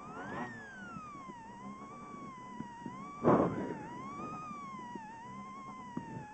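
Rally car rolling slowly after the stage finish, a high whine from its drivetrain rising and falling in pitch as the throttle comes on and off. A brief loud burst of noise about three seconds in.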